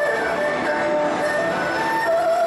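Erhu played solo with the bow: a melody of held notes that slide between pitches, with a rough bow noise under the notes.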